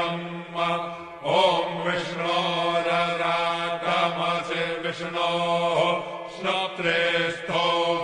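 Male voice chanting Sanskrit Vedic havan mantras in a steady reciting tone, with brief pauses for breath about a second in and again past six seconds.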